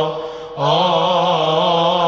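Coptic Orthodox liturgical chant by male deacons: a long, slightly wavering melismatic note on a vowel. It breaks off briefly near the start for a breath, then resumes and is held.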